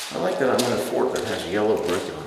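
A man's voice making a long wordless sound, its pitch wavering and dipping near the end.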